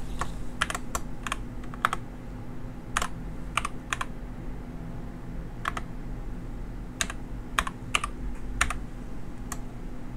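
Computer keyboard keys clicking as a file-folder name is typed, in irregular separate keystrokes with short pauses between them, over a steady low hum.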